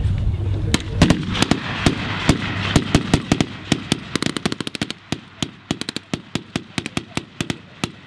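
Rifles firing blanks in an irregular firefight: single cracks and quick strings of shots, starting about a second in and running on past the end.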